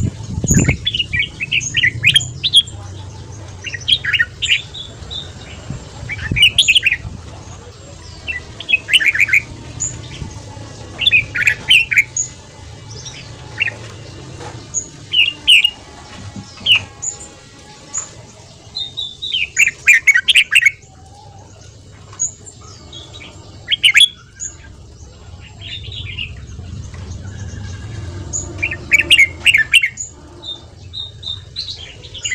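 Red-whiskered bulbul singing short, loud, quick warbling phrases every second or two, over a low steady background rumble. A single thump comes right at the start.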